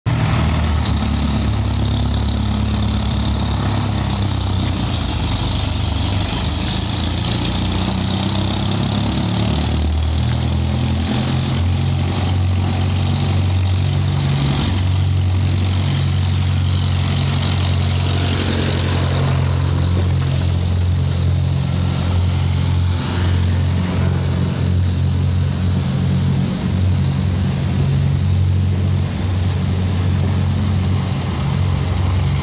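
Steady low engine hum of street traffic, with a small farm tractor's engine passing close by around the middle.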